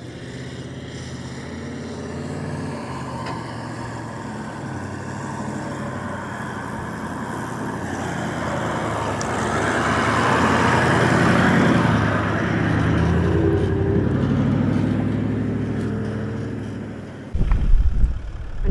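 Toyota LandCruiser 79 series four-wheel drive driving along a soft sand track: its engine grows louder as it approaches, passes close about ten to twelve seconds in, then fades away. A short burst of wind rumble on the microphone comes near the end.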